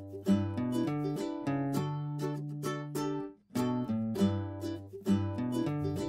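Background music of plucked string instruments playing a light, bouncy tune, cutting out for a moment about three seconds in.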